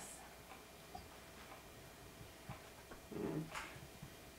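Quiet room tone with a few faint clicks, and one short low voice-like sound a little after three seconds in.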